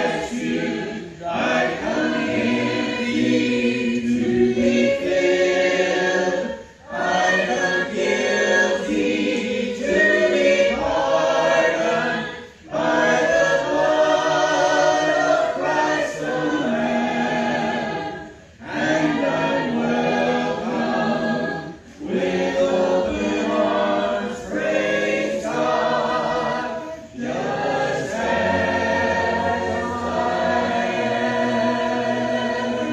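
Congregation singing a hymn a cappella, unaccompanied voices in harmony, in phrases several seconds long with brief breaks between lines.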